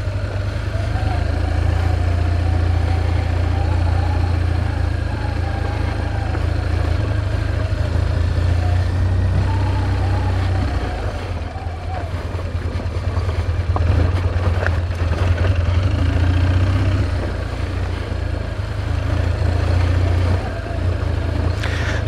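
BMW R1200GS motorcycle's boxer-twin engine running at low speed on a rough dirt track. The engine note rises and falls with the throttle.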